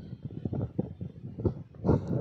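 Microphone handling noise: irregular low bumps and rubbing on the microphone as its stand is adjusted, with the loudest bump near the end.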